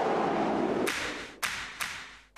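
Tail end of an electronic TV theme: a dense whooshing swell, then three sharp percussive hits about half a second apart, each fainter as the music fades out.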